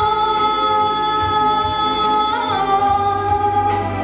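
A woman singing a pop song into a microphone, holding one long note and then stepping down to a second long note about halfway through.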